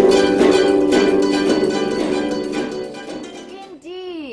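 A large ensemble of kotos playing, with many plucked strings ringing together. The music fades out in the last second.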